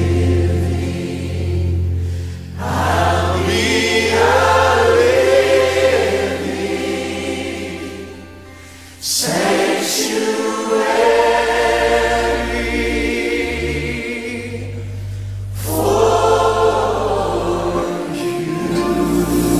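Choir singing a slow gospel hymn over a held low accompaniment, in long phrases, with a brief drop in level before a new phrase comes in about nine seconds in.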